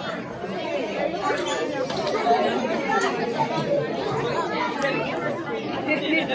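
A group of children and adults talking over one another: steady, overlapping chatter with no single voice standing out.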